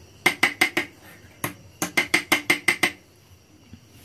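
Steel spoon clinking against a glass bowl while scooping out powder: a quick run of about four taps, then after a short pause a run of about eight more, each with a brief ringing chink.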